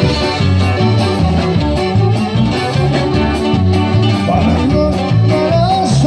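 Live norteño band playing a song, with saxophone and accordion over guitars, bass and drums, loud and continuous.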